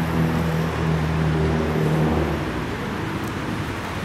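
City street traffic noise, with a low steady hum in the first half that fades about two and a half seconds in.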